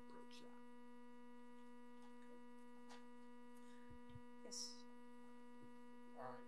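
Near silence with a steady electrical hum running underneath, a few faint clicks and a short soft hiss about four and a half seconds in.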